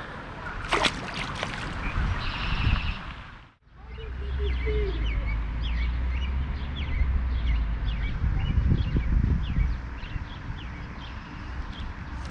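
Birds chirping over and over, with wind rumbling on the microphone. Both start after a brief drop-out about three and a half seconds in.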